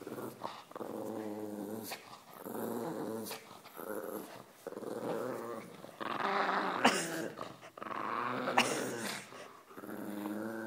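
A pug growling in repeated bouts while pulling on a plush toy in a game of tug of war, each growl lasting about a second with short pauses between, and two short sharp noises in the second half.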